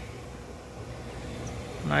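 A low, steady background hum with no distinct events.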